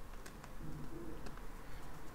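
A few faint light clicks as chopped nuts and seeds are dropped into a glass bowl of flour, with a short low tone lasting about half a second near the middle.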